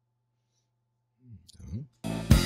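A single computer mouse click about one and a half seconds in, under a brief murmured voice near the end; the rest is near silence with a faint steady low hum.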